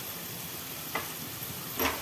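Oil and green masala paste sizzling steadily in a stainless steel pan, with a light click about a second in and a louder knock near the end.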